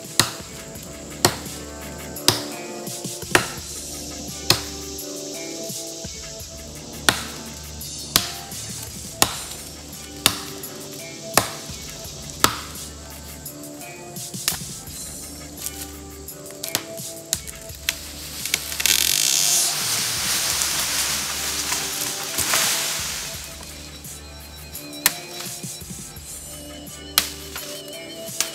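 Large knife chopping into wood, sharp strikes about once a second with a few pauses, over background music. A broad swell of noise rises and falls about two-thirds of the way in.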